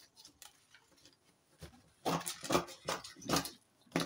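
Steel scissors snipping through brown pattern paper: about four quick cuts half a second apart in the second half, after a quiet start.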